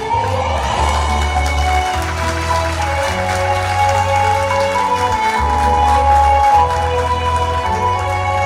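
Live music from an Arabic instrumental ensemble: sustained held notes over a steady low bass, with a few brief changes in the bass.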